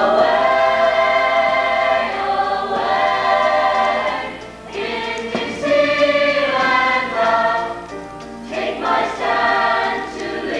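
Youth show choir of boys and girls singing together, in phrases of long held notes, with short breaks between phrases about four and a half and eight seconds in.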